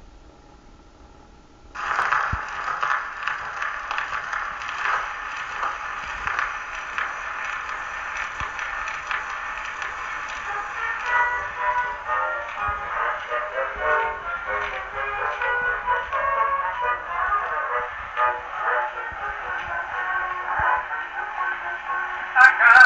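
Edison Diamond Disc record playing acoustically through a Victor III gramophone's horn. The stylus is set down about two seconds in, with a sudden rise of surface hiss and crackle. The record's instrumental introduction follows, its tunes coming through more clearly from about halfway.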